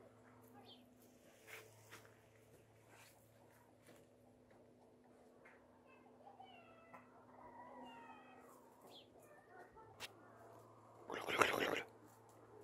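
A short, loud animal call with many overtones about a second before the end, over a quiet garden background with faint scattered calls and ticks in the middle.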